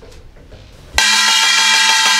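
Kkwaenggwari, a small Korean brass gong, struck once about a second in and left ringing with a bright, steady, many-toned metallic ring.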